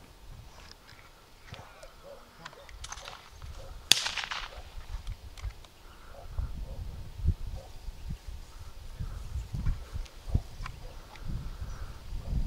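A single distant shotgun shot about four seconds in, with a short echo, fired for a thrown mark. From about halfway on, gusts of wind rumble on the microphone.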